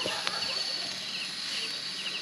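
Night insects chirping: a continuous high-pitched drone with short chirps repeating a few times a second. A single sharp metal click about a quarter second in as tongs grip food on the grill.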